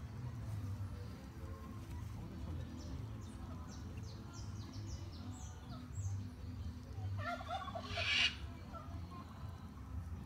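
Faint short bird chirps over a steady low hum. About seven seconds in, a bird gives one louder call of about a second, made of rapid warbling notes.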